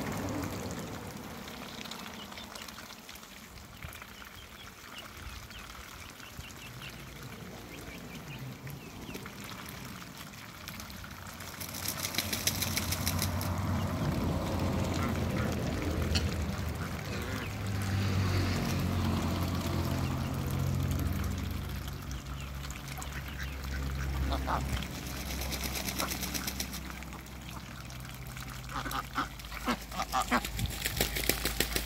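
Domestic ducks quacking in a flock, loudest in two stretches about 12 and 26 seconds in.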